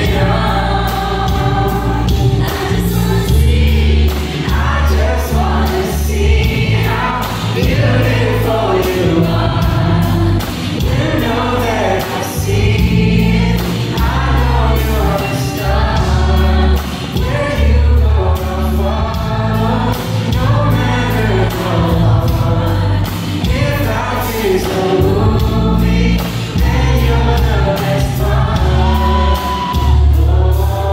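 Live band performance of a slow R&B duet: a man and a woman singing into microphones over bass guitar and drums through a PA, with a heavy, booming low end.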